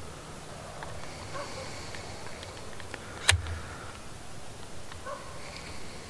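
Quiet handling of a DSLR camera on a telescope: a few faint clicks, then one sharper click with a low thump about three seconds in.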